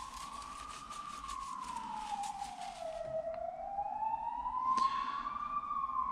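A siren wailing slowly: one long tone that falls in pitch over about two seconds, then rises again over the next few. Faint quick ticks sound under it in the first half.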